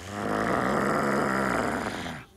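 A low, rough growling rumble that swells in at the start, holds steady for about two seconds, then stops.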